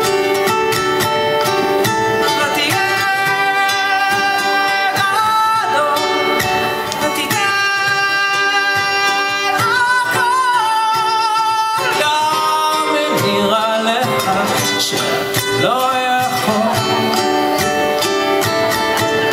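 Live ukulele strumming with a man singing long, held notes that glide between pitches.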